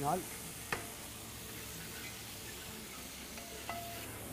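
A steel ladle stirring a large aluminium pot of rice and meat cooking over a gas burner, with a steady sizzle. There is one sharp knock of the ladle on the pot just under a second in.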